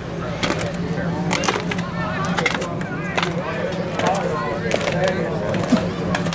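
Ballfield ambience: scattered sharp clicks and knocks at irregular intervals, with faint voices in the background over a steady low hum.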